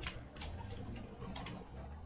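A few isolated computer keyboard keystrokes, each a short click, over a steady low hum.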